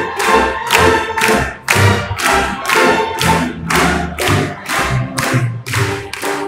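Symphony orchestra playing film music, with a steady beat of sharp strikes about two and a half times a second over sustained pitched parts.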